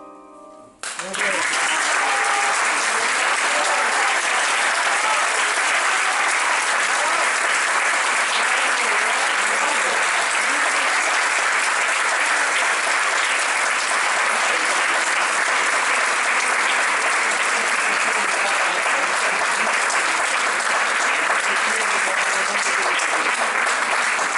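Audience applauding after the last sung note fades, the applause starting suddenly about a second in and carrying on steadily.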